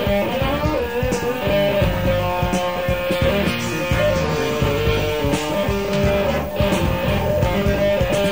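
Live rock band heard from the soundboard: an electric lead guitar holds and bends sustained notes over bass guitar and drums in an instrumental passage.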